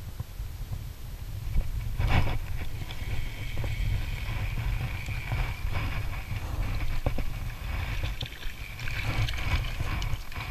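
Wind buffeting an action-camera microphone while a spinning reel is cranked in, with a sudden noisy swish about two seconds in. Near the end a hooked fish splashes at the surface.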